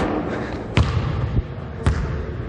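A basketball bouncing on a hardwood gym floor: several separate thuds, the loudest right at the start and then three more less than a second apart.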